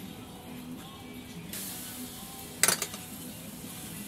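Faint music plays throughout. About a second and a half in, a light sizzle from the hot gas grill begins, and just before three seconds a single sharp metallic clink of a utensil or grill part rings out, the loudest sound.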